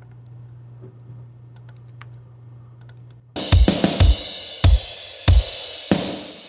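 Faint clicks over a low steady hum, then about three seconds in a rock song mix starts playing back from the Pro Tools session: heavy kick drum hits under a wash of cymbals.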